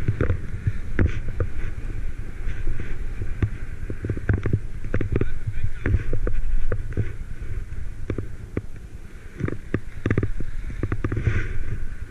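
Skis running and scraping over snow, with wind buffeting the action-camera microphone: a steady low rumble broken by frequent knocks and clatters of the skis.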